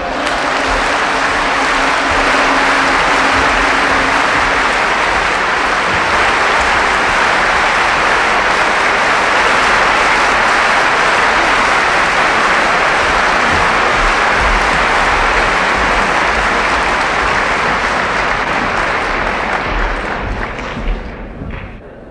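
Audience applauding at the end of a song, over the last held note of the music during the first few seconds; the applause fades out in the final seconds.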